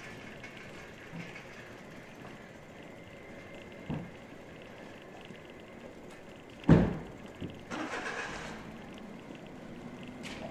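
Quiet street background with a small knock a little before halfway, then a sharp, loud thud about two-thirds of the way in, followed by a brief burst of noise.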